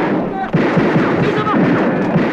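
Film action-scene soundtrack: a loud, dense din of gunfire and crashing with people shouting over it.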